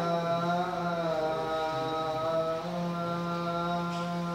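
A man's solo voice chanting the adhan, the Islamic call to prayer, in one long drawn-out phrase whose pitch winds slowly up and down.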